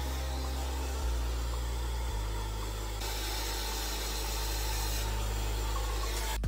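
Handheld hair dryer running steadily while blow-drying hair: an even rush of air.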